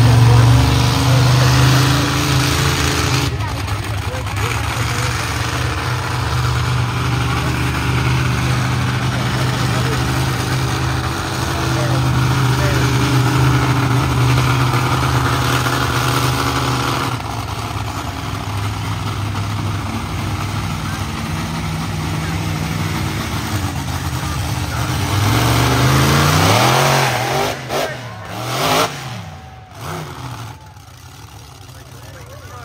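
Monster truck engine running, a steady drone that climbs in pitch as it revs hard late on, then falls away near the end.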